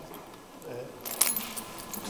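A cluster of light clicks and jingling rattles a little over a second in, over quiet room noise.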